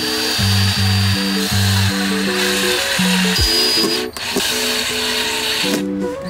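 Cordless drill-driver running, driving screws through a metal concealed cabinet hinge into a door panel. It starts suddenly, breaks off briefly about four seconds in, then runs again until near the end.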